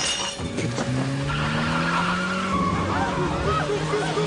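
A car engine revving up, its pitch rising steadily, with tyres squealing in short chirps in the second half.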